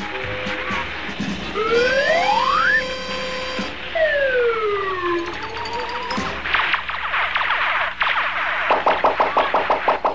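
Cartoon music and sound effects from a bank of TV sets all playing at once: a whistle sliding up, then one sliding down. Then crackling and a fast stuttering buzz as the sets short out and go dead.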